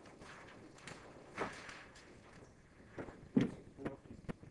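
Handling noise on a miniature puppet set: scattered faint knocks and rustles, with a brief scrape about a second and a half in and a louder thump about three and a half seconds in.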